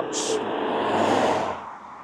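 A road vehicle passing by, its tyre and engine noise swelling to a peak about a second in and then fading away.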